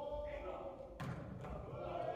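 A volleyball being struck during an indoor rally: one sharp knock about a second in and a softer one about half a second later, over faint voices.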